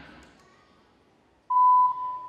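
The tail of a voice dies away into near quiet; then, about a second and a half in, a sudden loud beep, one steady pitch held for about half a second.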